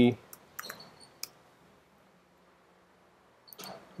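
A few light computer mouse clicks in the first second or so, then quiet room tone.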